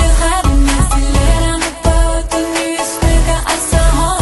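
Music with a strong bass and a steady drum beat.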